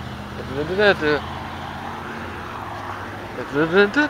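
Roadside traffic noise, with a vehicle's low engine hum that fades out about halfway. Two brief untranscribed bits of voice come about a second in and near the end.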